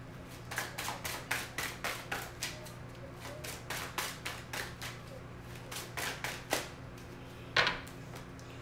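A deck of tarot cards being shuffled by hand, a quick run of soft card slaps and flicks, about three to four a second, with one louder snap near the end.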